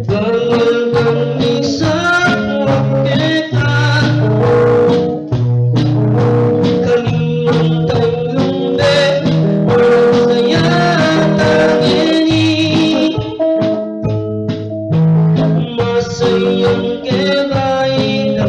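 Electric guitar played through an amplifier, with a man singing through a microphone.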